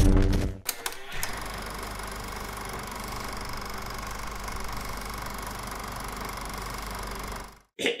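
The loud tail of a film clip's score and effects fades out in the first half second. A few clicks follow, then a steady mechanical whir and clatter of an old film projector runs until it cuts off suddenly just before the end.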